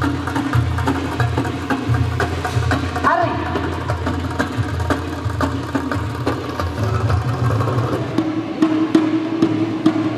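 Folk-dance music with a singing voice over a steady low beat. Near the end the sound changes to sharper hand-drum strokes over a held tone.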